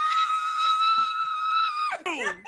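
A woman's voice holding one long, high-pitched squeal without words, steady in pitch, then sliding down sharply at the very end.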